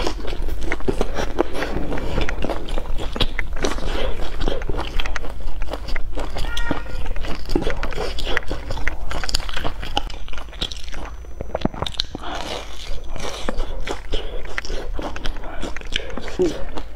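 Close-up chewing of a crispy breadcrumb-coated fried cake: dense crunching crackles of the crust with wet mouth sounds, easing off briefly past the middle and picking up again.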